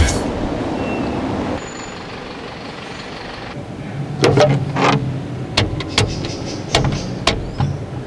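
Payphone keypad buttons pressed one after another, a sharp click about every half second, over a low background rumble.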